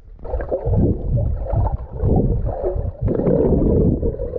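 Underwater sound picked up by a submerged action camera: a muffled, surging rush of water and bubbles as a swimmer strokes and kicks close to it. It sets in strongly about a quarter second in.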